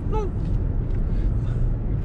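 Steady low road and drivetrain rumble inside the cabin of a moving Toyota Highlander hybrid.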